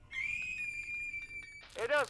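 A steady, high-pitched whistle, like a kettle's, held for about a second and a half with faint ticking under it; a voice starts speaking just before the end.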